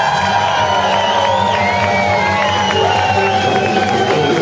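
Live band playing, with trumpets holding long notes over bass and drums, and a crowd cheering.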